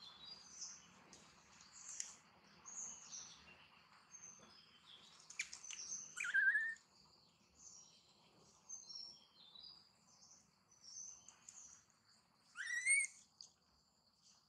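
Birds chirping, many short high calls scattered throughout, with two louder gliding calls about six and thirteen seconds in.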